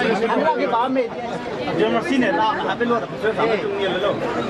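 Several people talking at once, overlapping voices close to the microphone.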